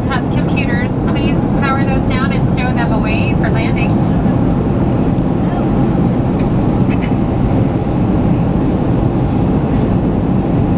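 Jet airliner cabin noise: the steady, loud roar of the engines and the air rushing past the fuselage, heard from inside the cabin.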